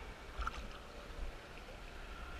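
Water in a cenote pool sloshing and lapping close to the microphone, with a brief splash about half a second in.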